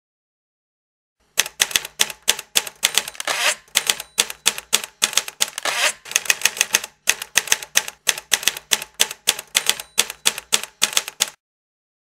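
Typewriter keys striking in a quick run of sharp clicks, starting about a second in and stopping shortly before the end, with a few brief pauses. It is a typewriter sound effect for on-screen text typed out letter by letter.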